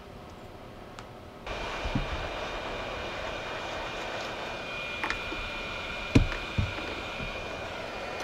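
A heat gun switched on about a second and a half in, its fan blowing steadily with a high whine as it shrinks heat-shrink tubing over a soldered ESC wire. A few short low knocks from handling the quad frame.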